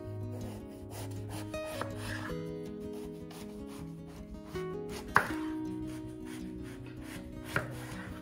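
Kitchen knife slicing through a whole eggplant on a wooden cutting board, the blade cutting through the flesh and knocking on the board twice, once about five seconds in and again near the end. Background guitar music plays throughout.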